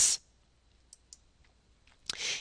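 Two faint clicks about a quarter second apart, a computer mouse clicked to advance the presentation slide.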